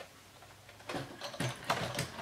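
A few light knocks and clicks, starting about a second in, as toy-grade RC cars or parts are handled and moved about, over a faint low hum.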